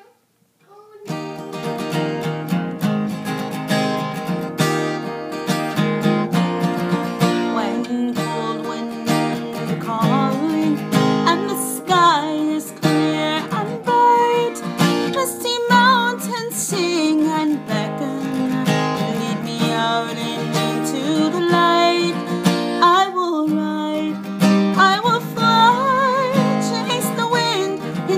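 Fast-paced strummed acoustic guitar starting about a second in, with a higher melody line playing over it.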